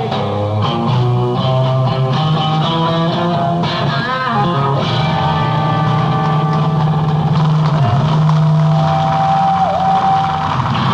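A rock band, electric guitar over bass guitar and drums, playing the closing bars of a song, with bent guitar notes about four seconds in and a long held high note that dips in pitch near the end.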